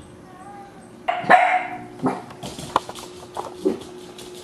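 A dachshund puppy barks once, loudly, about a second in, followed by a few shorter, sharper sounds.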